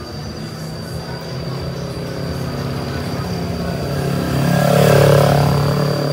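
Kawasaki Z300 parallel-twin with an aftermarket Akrapovic full-carbon exhaust riding past: the exhaust note grows steadily louder, peaks about five seconds in as the bike passes, then begins to fall away.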